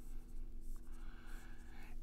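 Dry-erase marker writing on a whiteboard: faint, scratchy strokes in a couple of short spells, over a low steady room hum.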